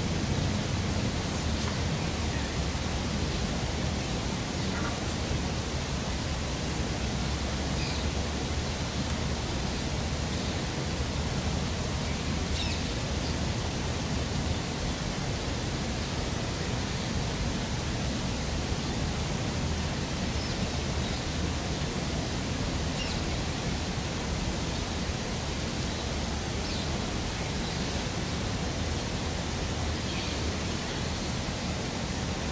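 Steady outdoor background noise with a low rumble, and a few faint high chirps now and then.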